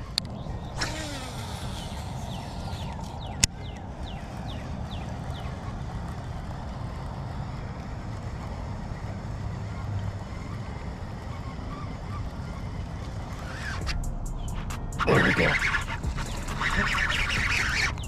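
Steady low wind rumble on the microphone while a topwater lure is worked, with a single sharp click about three and a half seconds in. From about fifteen seconds in, a louder noisy commotion as a bass strikes the topwater lure.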